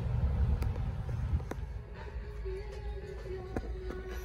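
Low rumble of wind and handling noise with a few sharp clicks, then from about halfway in, background music playing over a store's speakers.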